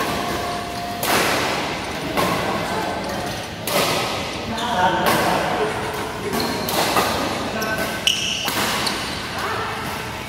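Badminton rackets striking a shuttlecock back and forth in a doubles rally, a sharp hit about every second or so, echoing in a large hall. Voices carry in the background.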